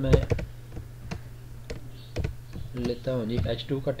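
A few separate keystrokes on a computer keyboard, spaced irregularly, over a steady low hum.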